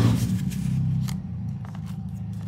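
Motorcycle engine idling outside, a steady low rumble, with light rustling and a tap of paper and cardstock being handled on the tabletop.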